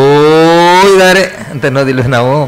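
A man's voice holding one long sung note for over a second, as in gamaka recitation of Kannada verse, then breaking back into speech near the end.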